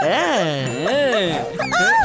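A cartoon character's wordless cries swooping up and down in pitch, over background music. About one and a half seconds in comes a quick rising swoosh sound effect.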